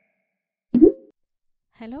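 A single short cartoon pop sound effect with a quick upward swoop, about three-quarters of a second in, accompanying an animated logo.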